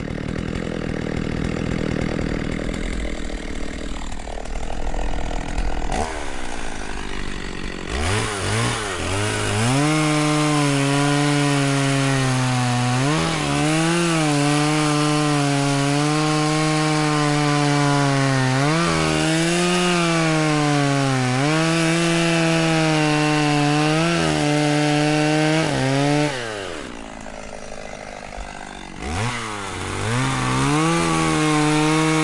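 Stihl two-stroke chainsaw cutting maple logs. It sounds rougher and lower for the first few seconds, then runs at high revs with a steady whine whose pitch sags each time the chain bites into the wood. It eases off for a couple of seconds near the end, then revs up again.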